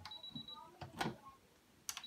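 Brother FS70WT computerized sewing machine's needle up/down button being pressed: a short high beep at the start, then sharp clicks about a second in and near the end as the needle is raised and lowered.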